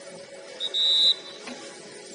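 Referee's whistle on a football pitch: a brief pip, then a short, steady, high-pitched blast lasting under half a second.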